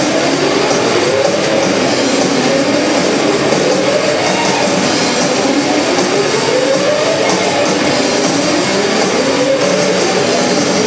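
Live shoegaze band playing a loud, steady wall of distorted, fuzzed guitar noise, with pitches sliding slowly upward in two long sweeps.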